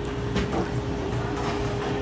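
Steady machine hum: a low rumble with one constant tone over it, typical of refrigeration or ventilation running in a shop. A light click about half a second in as a can is taken off a drinks-cooler shelf.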